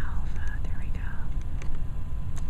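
A person's soft, whispered or murmured voice gliding in pitch for about the first second, over a steady low rumble, with a few faint clicks.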